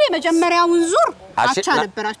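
A person's voice talking in a high, drawn-out way, with one long held vowel about half a second long that swoops up in pitch at its end.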